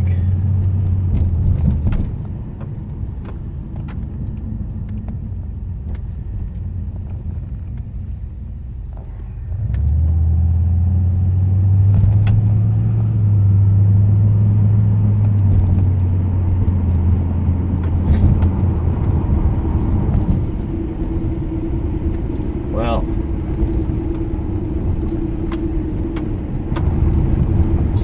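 Pontiac Grand Prix engine and road noise heard from inside the cabin. The low engine hum eases off for several seconds, then about ten seconds in swells and rises a little as the car accelerates, before settling into a steady cruise.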